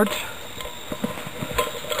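Light handling noises: small clicks and rustles as a metal can canteen is pushed under the cords of a blanket roll, with a soft knock about one and a half seconds in.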